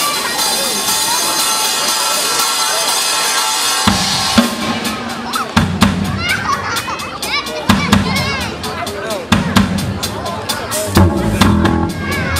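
A live rock band starts a song: about four seconds in, the drum kit and bass guitar come in with steady, regular drum hits and electric guitars. Before that, crowd voices over a sustained wash of sound.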